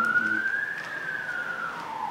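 A siren wailing: a single tone rising slowly to its peak about a second in, then falling again.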